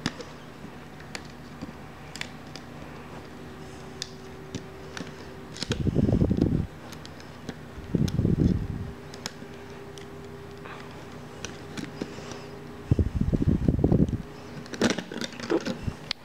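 Rubber bands being worked off a plastic Rainbow Loom, with scattered light clicks and snaps. Three loud bursts of rough, low noise come from a hand rubbing right against the recording device, about six seconds in, about eight seconds in and again near the end.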